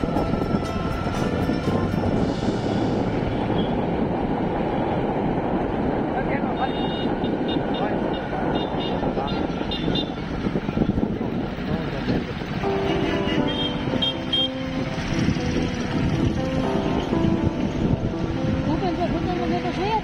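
Steady rumble of a vehicle driving along a town road, with traffic around it. From about two-thirds of the way in, voices and music come in over it.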